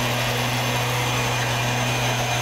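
Backpack cold-fog generator spraying acaricide mist: its small engine runs at a constant steady hum under the even rushing hiss of the blower and nozzle.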